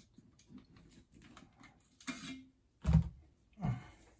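A trigger unit being fitted by hand to a bolt-action rifle action: faint handling of metal parts, then a few short knocks, the two loudest near the end.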